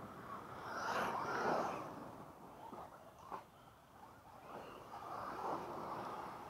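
Electric RC cars driving on a dirt track: a rush of tyres on dirt and motor noise that swells as cars pass, loudest about a second in and again in the last seconds.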